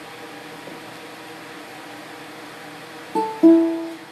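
Ukulele strummed twice in quick succession near the end, the second strum louder and ringing on; before that only a low steady room hum.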